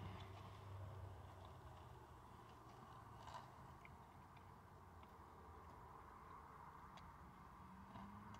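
Near silence: quiet car-cabin room tone with faint chewing of a burger, and a faint soft sound about three seconds in.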